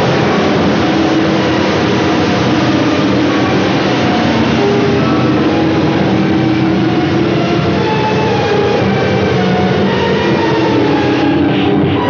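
Loud, dense film soundtrack: a steady roaring noise with long held tones over it, with no break.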